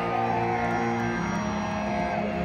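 Live rock band holding sustained electric guitar chords through the PA, shifting to a new chord a little past a second in.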